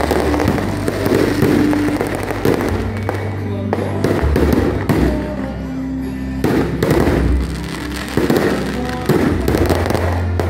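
Aerial fireworks going off in rapid succession, a dense crackling and popping that thins briefly a few seconds in, with music playing underneath.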